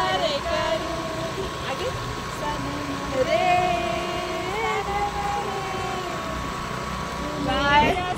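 Women's voices singing in long, drawn-out held notes while riding a scooter, over the scooter's engine and steady wind rush.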